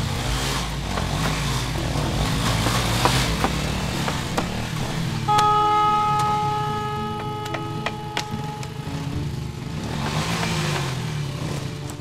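Small motorcycle engines running and revving as several bikes pull up and idle. About five seconds in, a steady high tone sounds for roughly three seconds.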